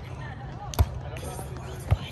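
Two sharp slaps of a volleyball being struck by hand during a rally, about a second apart.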